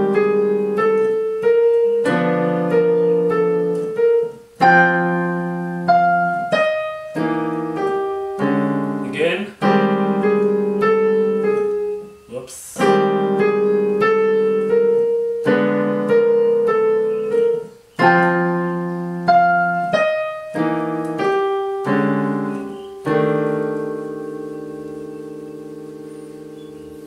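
Technics digital piano played with both hands, slowly and in time: a run of struck chords and left-hand octaves in short phrases, each chord left to ring. The last chord is held and fades away near the end.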